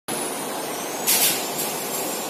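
Short hiss of compressed air about a second in, followed by a fainter second hiss, over a steady bed of workshop noise.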